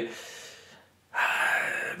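A man's drawn-out, breathy "ahh" hesitation sound, starting about a second in after a short breath and a brief pause.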